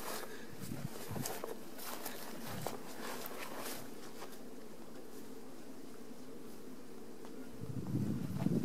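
Honeybees buzzing steadily around nearby hives, with a few faint rustles and clicks in the first half.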